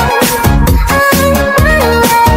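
Electronic dance remix music: a kick drum on every beat, about two a second, under sustained synth notes.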